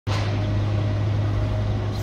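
Heavy diesel engine running steadily with a deep, even hum.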